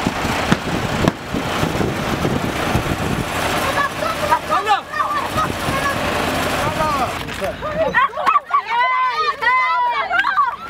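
A heavy army truck runs close by, with rough wind-like noise on the microphone and scattered shouting voices. From about eight seconds in, a child's high voice shouts clearly.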